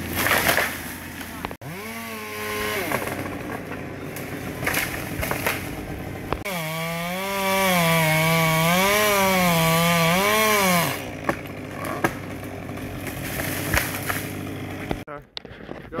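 Chainsaw cutting in tree work: a short rev about two seconds in, then a louder cut of about four seconds in the middle, the engine's pitch rising and falling as the chain bites into the wood.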